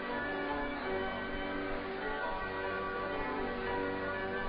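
Bell-like chiming tones, several pitches ringing and overlapping in a steady, sustained wash.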